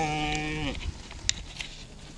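A goat's long, level bleat that ends about three quarters of a second in, followed by a couple of short, sharp clicks.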